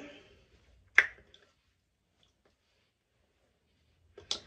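A single sharp click about a second in, followed by a few faint ticks, then near silence.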